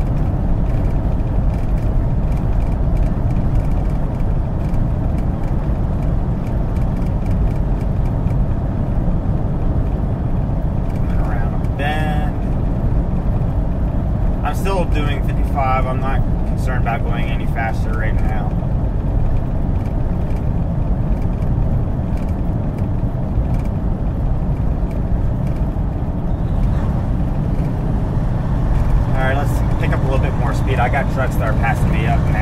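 Steady low engine and road drone inside a semi-truck cab cruising at highway speed, with brief snatches of a voice about midway and again near the end.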